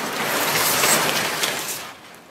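Brown kraft packing paper and cardboard rustling, crinkling and scraping as a cardboard-wrapped package is pulled out of a large shipping box. The noise is loudest about a second in and fades near the end.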